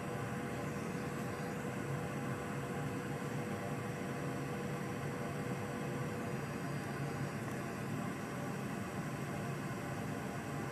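Steady hiss of blowing air with a low hum underneath, from a blower or fan running on the workbench. A faint steady tone in it stops about two-thirds of the way through.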